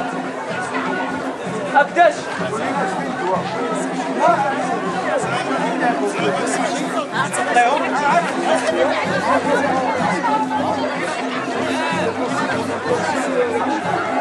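Crowd chatter: many people talking at once in a dense, continuous babble of voices.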